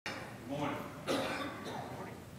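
A person coughs once about a second in, with indistinct talk around it.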